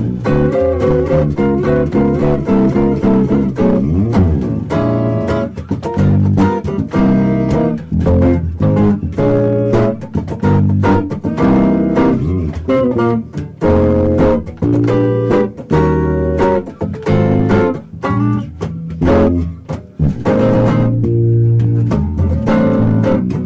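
An electric guitar and electric bass duo playing jazz live, a melody of plucked single notes and chords over a walking bass line, in phrases with short breaks.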